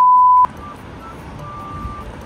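A loud, steady electronic beep at one pitch, a TV test-tone style sound effect lasting about half a second and cutting off suddenly, followed by low room noise.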